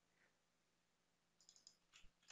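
Mostly near silence, then from about one and a half seconds in a few quick, faint clicks of a computer mouse, selecting a word of text.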